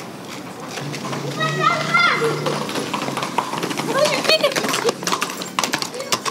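Children calling and shouting in a street, two bursts of high voices, over a scatter of irregular clicks like hooves clopping on pavement.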